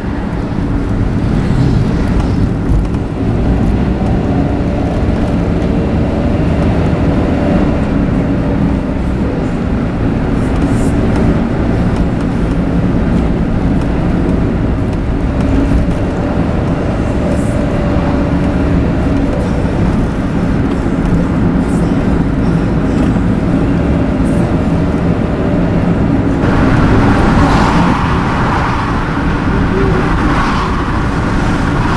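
Steady road and engine noise heard from inside a moving car: a low rumble of engine and tyres on the road. Near the end it turns brighter and slightly louder, with more hiss.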